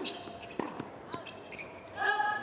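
Tennis rally on a hard court: several sharp racket strikes on the ball, the first right at the start, with short high squeaks of shoes on the court surface between them.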